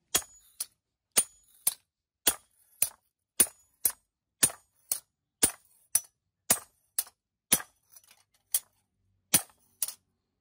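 Steel hand hammer striking a knife blade laid on a steel block anvil: short, sharp metallic blows at a steady pace of about two a second, around twenty in all, each ringing briefly.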